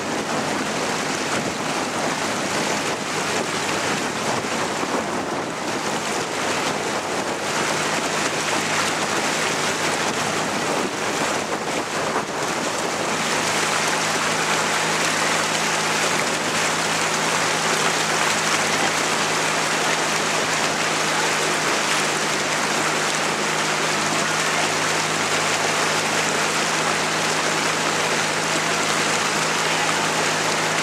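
Steady rushing noise of water and wind at the microphone, with a low steady hum joining about 13 seconds in.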